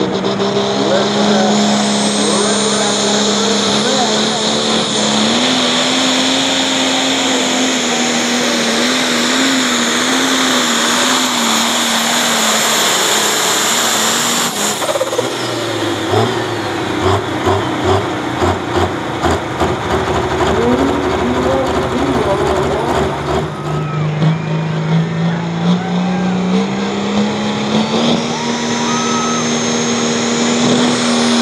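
Turbocharged diesel engines of Super Pro class pulling tractors. For the first half an engine runs hard with a high turbo whine, its pitch rising slightly; then a lumpy, pulsing engine sound; and near the end another engine revs up with a rising turbo whine.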